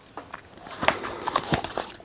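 Handling noise: soft rustling and a few short light knocks and clicks as a tablet in its cover and a USB cable are picked up and moved.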